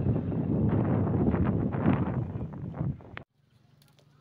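Wind buffeting the microphone: a loud, uneven rumbling noise that cuts off suddenly a little after three seconds in.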